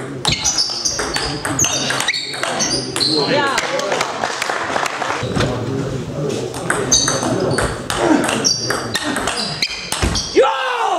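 Table tennis rally: the plastic ball clicks off the rackets and the table many times in quick succession, and sports shoes squeak on the hall floor as the players move.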